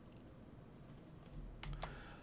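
A few quick soft clicks from a computer keyboard being used, about one and a half seconds in, over faint room tone.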